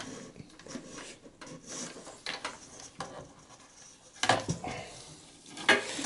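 Small plastic clicks and cable rustling as gloved hands unplug and pull the power supply's 4-pin CPU power connector and wiring loose inside a desktop PC case. There is a louder clatter about four seconds in and again near the end.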